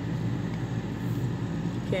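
A steady low hum with a faint even hiss, with no distinct events.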